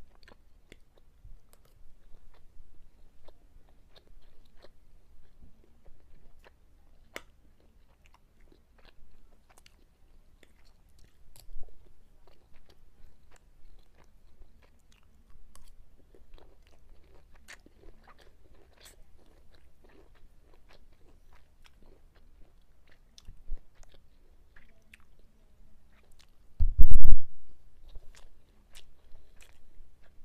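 Close-miked chewing and wet mouth sounds of a person eating lasagna and rice, with scattered short clicks of a metal fork. Near the end a single loud, bass-heavy pop hits the microphone.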